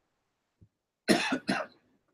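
A person coughing twice in quick succession, a little over a second in.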